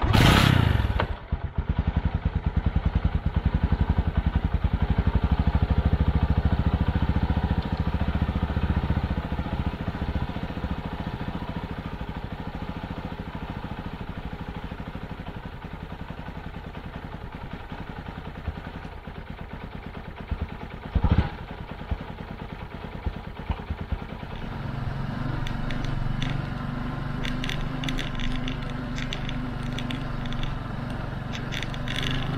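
Small motorcycle engine starting abruptly and idling with a fast, even beat, its level easing off after the first several seconds. There is a single knock about two-thirds of the way through. Near the end the engine runs steadier and higher as the bike gets under way.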